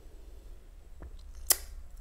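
Quiet room tone with a faint click about a second in, then one sharp click about halfway through.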